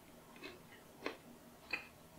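Faint mouth sounds of a person chewing a mouthful of meat with closed lips: three soft, wet clicks spread across the two seconds.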